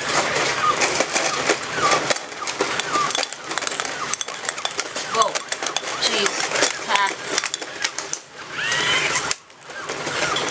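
Several Robosapien RS Media toy robots walking: busy plastic clicking and clattering from their geared motors and feet, mixed with snatches of the robots' electronic voice and sound effects, with a brief lull near the end.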